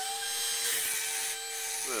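Wall-climbing remote-controlled toy car's suction fan running with a steady high whine, holding the car against the ceiling.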